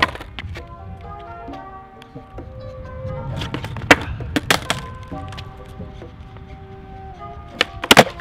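Background music with several sharp clacks of a skateboard's wooden deck and wheels hitting a concrete sidewalk during failed ollie attempts: a cluster about three and a half to four and a half seconds in, and another near the end.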